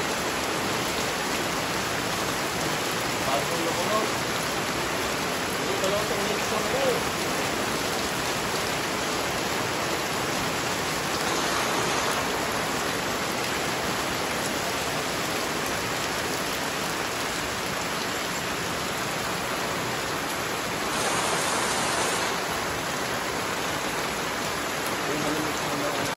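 Heavy rain falling steadily, with water streaming off a roof edge, as a continuous even hiss. It swells louder for a moment around the middle and again about 21 seconds in.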